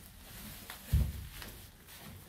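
Faint rustling with a single short, low thump about a second in.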